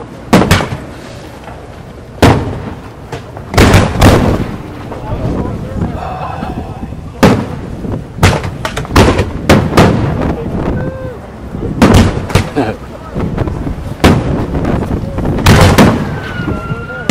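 Aerial firework shells bursting in a string of loud bangs at uneven intervals, several in quick clusters, with a low rumble between them.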